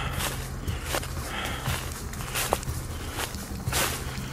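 Footsteps crunching through a thick layer of dry fallen leaves at a walking pace, about one or two steps a second.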